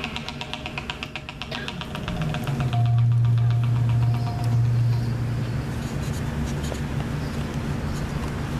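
Live percussion-and-keyboard music: a rapid, even ticking pattern of about ten strokes a second, then a deep held bass note for a couple of seconds midway, with lighter scattered hits after it.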